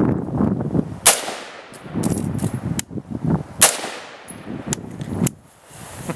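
Two loud rifle shots about two and a half seconds apart from an AR-15-type rifle with a stock A2 birdcage flash hider, with a few fainter sharp cracks in between and after.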